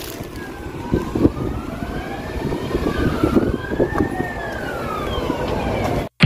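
Emergency-vehicle siren wailing, its pitch sweeping slowly up and down, two wails overlapping and crossing, over a steady low traffic rumble with a few knocks.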